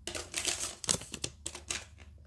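Hands rummaging around a cardboard collector's case and its small plastic pieces: a quick, irregular run of light clicks and taps.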